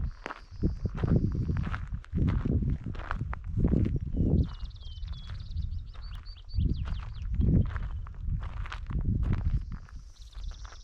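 Footsteps crunching on a gravel trail at a walking pace, about one to two steps a second, with a short pause midway. Wind rumbles on the microphone underneath.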